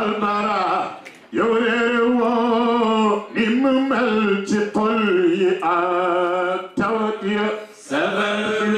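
A man's solo, unaccompanied voice chanting a religious song into a microphone. He holds long, wavering notes in phrases of one to two seconds, with short breaths between them.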